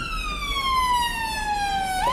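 Emergency vehicle siren wailing: one long tone sliding steadily down in pitch, then sweeping quickly back up right at the end.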